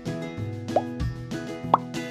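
Background music with two short rising pop sound effects about a second apart, one near the middle and a louder one near the end, the kind of button-click effects laid over an animated subscribe screen.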